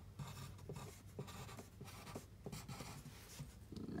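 HB graphite pencil writing a short word by hand on a paper worksheet: a quick run of short, faint scratching strokes.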